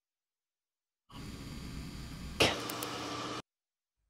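A slowed-down recording of the final k of the spoken syllable 'bek': faint hiss during the closure before the consonant, then a sharp release burst of the k about halfway through, trailing off in breathy noise that cuts off suddenly.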